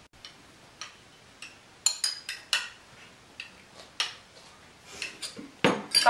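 Spoons and dishes clinking: a string of irregular light clicks and clinks, with a louder knock near the end.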